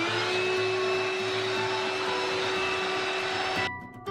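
Shop vacuum running with its hose nozzle over dirt-covered lead-acid battery tops, cleaning the battery box. Its motor note glides up briefly as it comes on, holds steady, then cuts off suddenly near the end.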